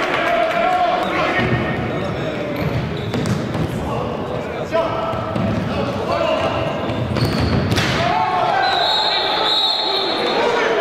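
Indoor futsal play in an echoing sports hall: players shouting to each other, with the ball's kicks and bounces knocking on the wooden floor. Near the end a referee's whistle is blown in one held blast as play stops.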